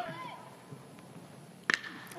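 Low ballpark background, then a single sharp crack of a metal baseball bat striking a pitched ball near the end.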